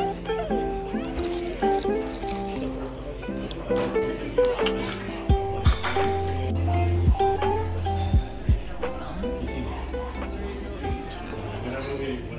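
Background music: a mellow track of plucked-string notes over a deep bass line.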